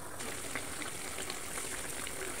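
Meat and onions cooking in a pot: a steady sizzling hiss with scattered small crackles, setting in abruptly just after the start.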